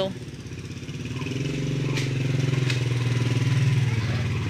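A motorcycle engine running steadily nearby, growing louder about a second in and then holding at one pitch, with two faint clicks in the middle.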